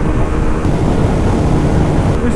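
TVS Apache 160 single-cylinder motorcycle held near its top speed of about 122 km/h, with a steady engine note under heavy wind and road rush on the onboard microphone.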